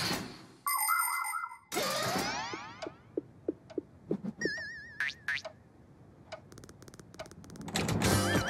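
Cartoon sound effects: a short electronic bleeping chime, then a sweeping boing-like glide. After that come scattered light plinks, a brief wobbling tone and, near the end, a quick run of clicks.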